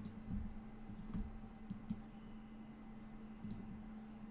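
A few scattered computer mouse clicks, about five or six spread irregularly across the few seconds, over a faint steady low hum.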